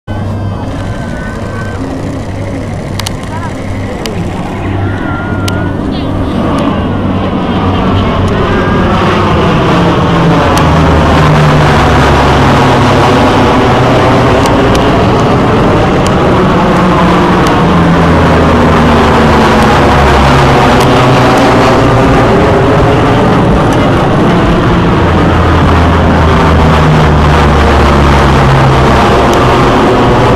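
C-130H Hercules with its four turboprop engines, flying low overhead on approach to land. The propeller drone grows louder over the first ten seconds, then holds at a loud, steady level with a sweeping, phasing sound as the aircraft passes above.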